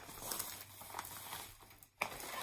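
Faint, irregular rustling and crinkling of paper packaging being handled on a tabletop.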